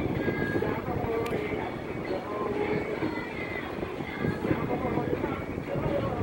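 Television sound in the room: faint, indistinct speech over a steady low rumble.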